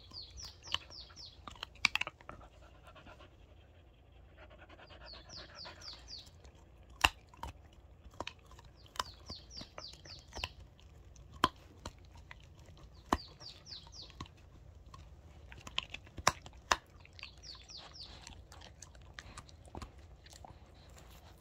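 Dog chewing a piece of meat held in a hand, with sharp, irregular clicks of its teeth. A bird in the background sings a short run of rising notes about every four seconds.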